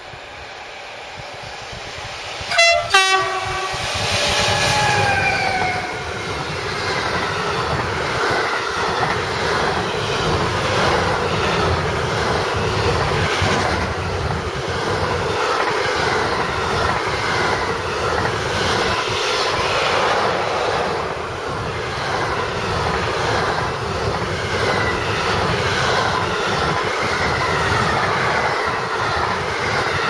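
A freight train carrying lorry semi-trailers gives a short horn blast about two and a half seconds in, then passes close by: the locomotive goes past with a falling pitch, followed by the steady rolling rumble and clatter of the loaded wagons' wheels over the rails.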